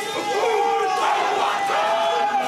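A group of Māori voices chanting a haka in unison: loud shouted calls from many people, held and bending in pitch.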